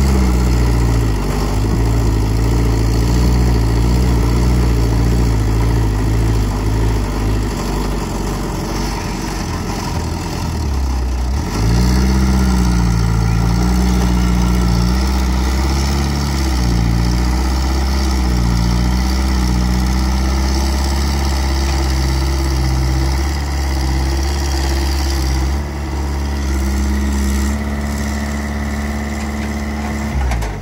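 Diesel engine of a hydraulic excavator stuck in mud, running loudly under load, with its speed sagging and picking up again as the machine works to drag itself free. About eleven seconds in the engine dips sharply, then revs back up.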